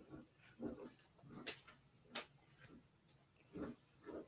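Near silence, broken by a few faint short sounds: two soft low murmurs and two brief hissy sounds in between.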